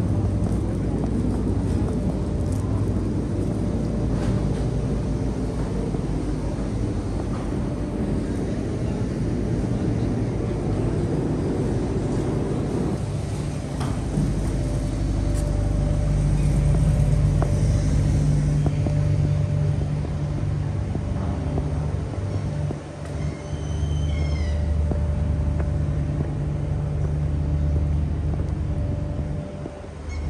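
Steady low engine rumble with a constant hum, the machinery noise of a busy harbour front. About 23 seconds in, a bird chirps a few times briefly.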